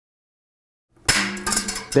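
Silence for about a second, then the sharp snip of cutters going through a slack steel spoke on a loaded bicycle wheel, followed by light metallic clicks.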